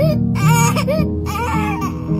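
A young child crying hard in three wailing bursts with a wavering pitch, over soft background music.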